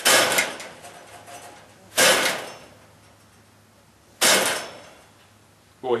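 Three sharp knocks and rattles of a wire rabbit cage, about two seconds apart, each dying away within half a second, as rabbits move about inside it during breeding.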